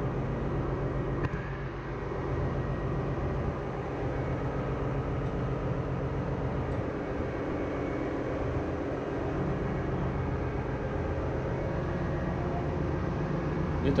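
Steady drone of running ship's engine-room machinery: a low hum with several fixed tones, heard from inside the main engine's steel scavenge air receiver.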